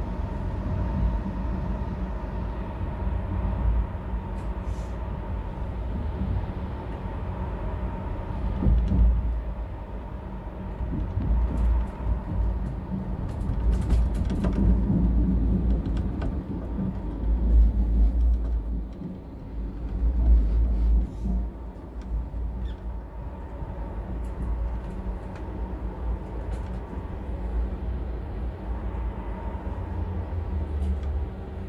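Narrow-gauge electric train heard from inside the driver's cab while running: a steady rumble of wheels on rail that swells and eases, under a motor hum of a few steady tones, with scattered clicks and knocks, a cluster of them about halfway through.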